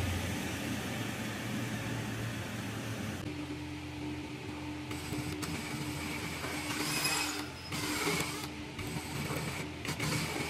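A woodworking power tool's electric motor running steadily, with a steady hum that gains a higher tone about three seconds in.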